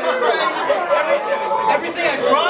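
Indistinct chatter: several men's voices talking over one another in a crowded room.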